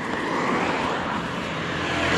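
Road traffic: the steady rush of cars going by on an avenue, swelling slightly as vehicles pass.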